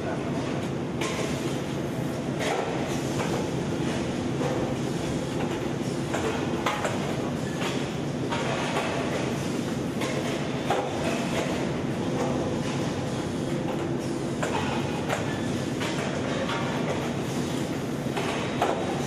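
Steady running din of a rotor aluminium die-casting machine, with short metallic clanks and knocks every few seconds at irregular intervals.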